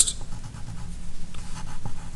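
Pencil writing on paper: soft, scratchy strokes as a letter is written, over a faint steady low hum.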